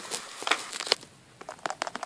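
Small plastic clicks and taps of Littlest Pet Shop toy figures being handled and set down against a plastic playset, with a brief pause just after the middle.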